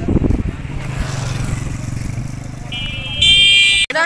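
A motor vehicle engine running steadily. Near the end a vehicle horn sounds loudly for under a second.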